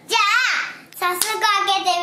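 A small child's high-pitched voice calling out twice, with a couple of hand claps about a second in.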